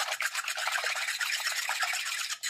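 Metal fork whisking raw eggs in a glass bowl: a rapid, steady run of light scraping clicks of the tines against the glass and the slosh of the eggs.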